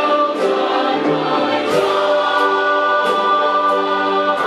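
A church choir singing long held chords with instrumental accompaniment that keeps a steady beat, about one stroke every two-thirds of a second.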